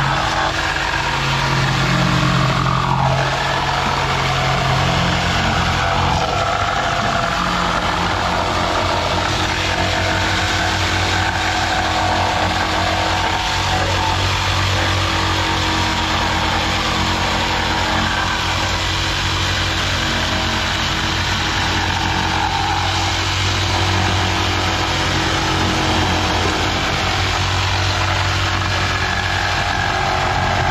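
Corded electric jigsaw running steadily, cutting through wooden wall-cladding boards.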